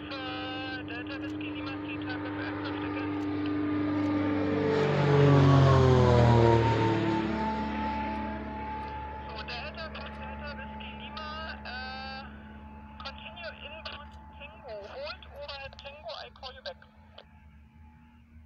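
Light propeller aircraft passing low overhead on approach: its engine drone grows louder, peaks about five to six seconds in, and drops in pitch as it goes past, then fades away.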